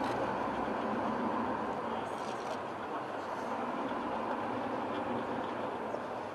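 Steady outdoor street background noise, a continuous traffic-like hum and hiss with no clear single event.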